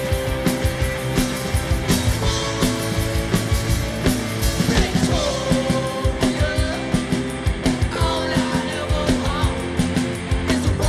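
Punk-pop rock band playing live: electric guitars, keyboard, bass and drums on a steady driving beat, with a lead singer's voice over it in the second half.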